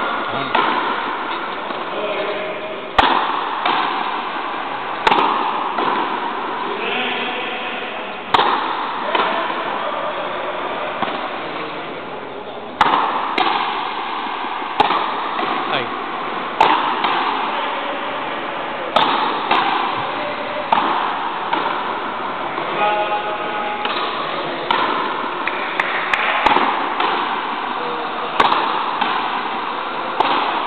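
Frontenis rally in an indoor fronton: the rubber ball is struck by rackets and rebounds off the front wall, giving sharp cracks about every two seconds that echo through the hall. Faint voices can be heard between the shots.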